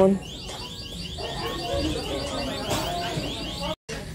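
An electronic alarm sounding: fast, evenly repeating high-pitched chirps, several a second, that cut off near the end.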